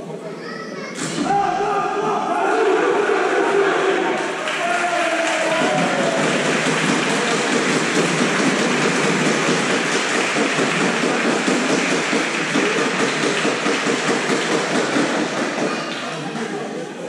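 Several men's voices talking loudly over one another close by in a basketball team huddle, ringing in a large gym hall, with a single thump about a second in.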